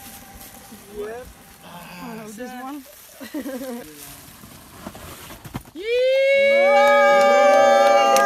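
A few voices talking, then about six seconds in a group of people breaks into a loud, long, held cheer together.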